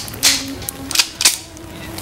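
Handguns being handled and checked: several sharp metallic clacks in the first second and a half, the loudest about a quarter second in and again about a second in.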